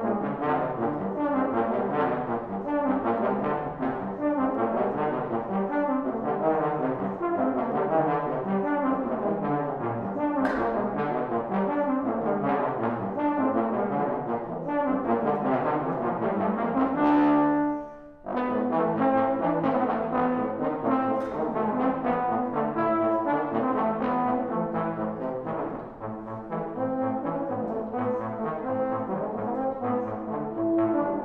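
Two trombones playing a fast-moving duet with close, interlocking lines. The playing breaks off briefly about eighteen seconds in, then picks up again.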